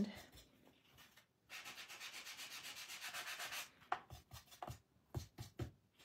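Paper sanding block rubbed quickly back and forth over the edge of cardstock, about six even scraping strokes a second, starting about a second and a half in, sanding off ink that went over the edge. A few light taps follow near the end.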